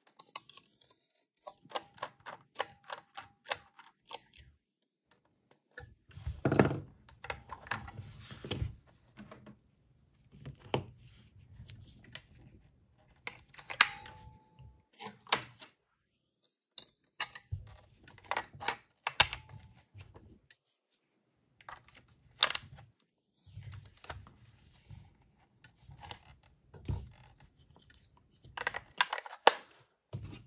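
Small screwdriver working screws out of a plastic Seiza Blaster toy's shell, with runs of quick ticking clicks. Between them come scattered clicks and knocks of the hard plastic parts being handled.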